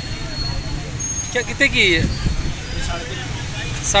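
Street-market background: a steady low rumble of road traffic, with a voice speaking briefly in the middle.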